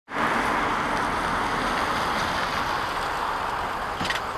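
Road traffic noise from a dual carriageway: a steady hiss of tyres on tarmac that slowly fades.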